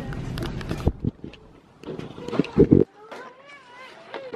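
A rubber ball thrown at the camera: a light knock about a second in, then a loud double thump of the ball striking the handheld camera a little past the middle. A short, high, wavering voice sound follows near the end.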